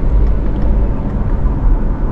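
Steady low rumble of engine and road noise inside the cabin of a Tata Curvv with a 1.5-litre four-cylinder turbo-diesel, as the car is driven a little faster.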